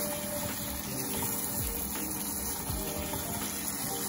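Okra and shrimp being stirred in a pot of liquid with a plastic utensil: a steady wet, watery noise over a constant low hum, with a few faint low knocks.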